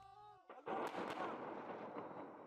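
Distant blast of a suicide bombing on a building: a sudden explosion just over half a second in, followed by a long, steady rumble.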